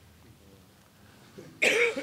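A man coughing, a sudden loud burst near the end of a quiet pause.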